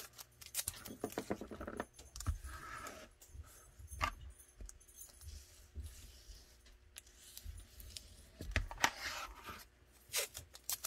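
Handling noises of a tape-wrapped pistol mold: painter's tape being pressed and rubbed down and small pieces moved about, with sharp clicks and clacks of hard objects, one at the start, one about four seconds in and a cluster near the end.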